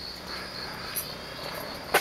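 Insects trilling in a steady, high-pitched drone, with one sharp click just before the end.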